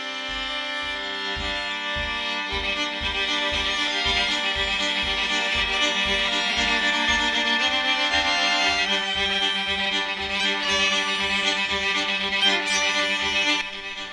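Fiddle playing a lively, merry jig over a steady low beat of about two and a half beats a second.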